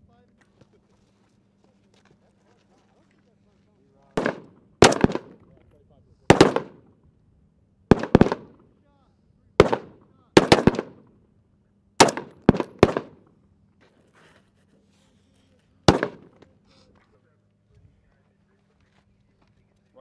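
Rifle shots, about a dozen, fired singly and in quick pairs over some twelve seconds, each a sharp crack with a short ring-out.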